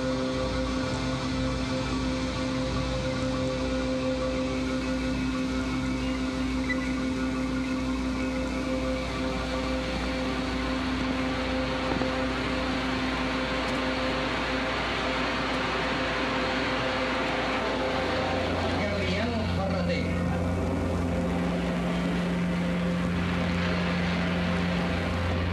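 Sustained ambient drone: steady held tones over a dense hiss, with the low tones shifting to a deeper hum about three-quarters of the way through.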